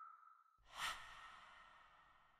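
Faint sound effects of an animated logo sting: a lingering ringing tone fades out, then a soft whoosh about a second in leaves a ringing tail that dies away.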